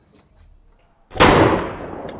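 A single shot from a Ruger Bearcat .22 revolver about a second in: a sharp crack that dies away slowly in a long echo.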